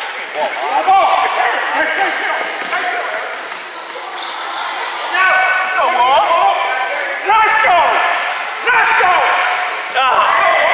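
Live basketball game in a gym: the ball bouncing on the hardwood court amid players' and spectators' shouting voices, with louder bursts about five, seven and a half and nine seconds in.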